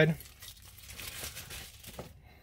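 Plastic bubble-wrap packaging crinkling and rustling as it is handled and put aside.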